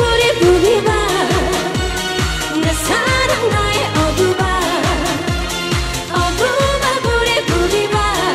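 A woman singing Korean trot live into a microphone over a backing track with a steady, fast dance beat and bass line.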